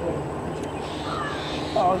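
Outdoor background noise with a few faint bird calls.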